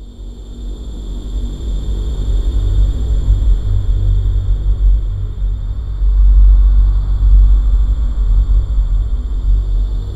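A loud, steady low rumble like an engine running, with a steady high whine over it, fading in at the start.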